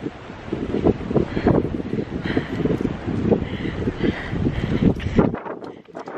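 Strong wind buffeting the phone's microphone: a loud, gusty low rumble that drops away suddenly near the end.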